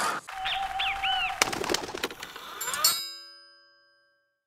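Closing sound-effect sting: a short steady tone with a few bird-like chirps over it, some clicks, then a bright chime that rings out and fades away about three seconds in.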